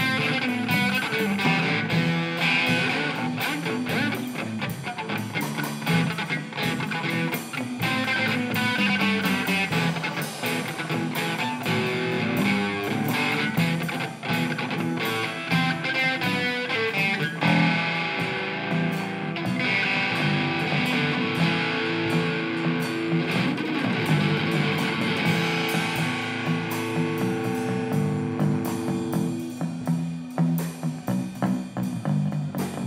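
Live rock band playing a song on electric guitar, bass guitar and drum kit, with strummed guitar over a steady drum beat.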